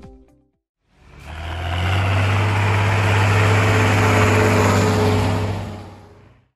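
A large diesel engine running at a steady speed: a deep, even hum under a broad rushing noise. It fades in about a second in and fades out near the end.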